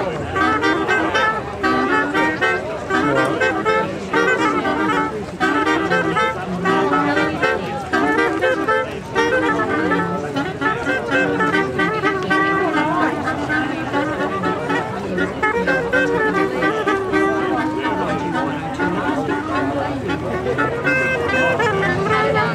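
Three wind instruments made from bicycle seat posts, saddles still attached, played together in a tune that steps up and down note by note.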